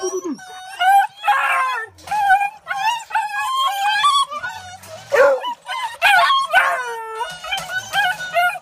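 Several hounds howling and yelping together, their wavering cries overlapping, with a few louder swooping howls about five and six seconds in.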